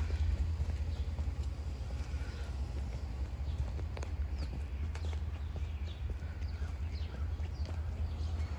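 Footsteps on a concrete sidewalk strewn with fallen cherry petals, over a steady low rumble on the microphone, with a few short bird chirps in the background.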